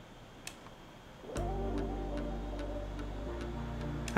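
A few faint clicks, then about 1.4 s in background music starts: sustained tones with a steady ticking beat about three ticks a second.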